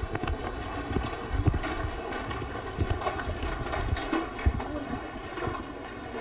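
A room of people getting up from their seats: shuffling feet, chairs shifting and clothing rustling, with scattered irregular knocks and thumps.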